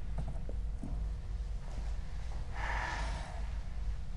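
Steady low hum of room tone, with one short breathy rush of noise, lasting under a second, about two and a half seconds in.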